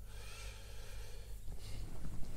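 A man breathing in audibly close to the microphone, a soft hissing inhalation lasting about a second and a half, over a steady low electrical hum.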